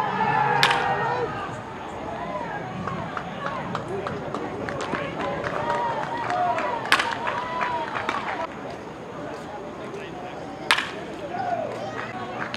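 Baseball bat striking pitched balls in batting practice: three sharp cracks, about a second in, just before the middle and near the end, over background voices.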